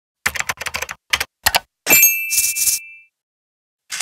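Typewriter sounds: a quick run of keystroke clacks, then the bell dings and rings out, with a short rasp like the carriage being returned.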